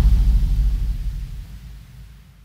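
Low rumbling tail of a deep bass hit in a logo sting, fading away steadily over about two seconds.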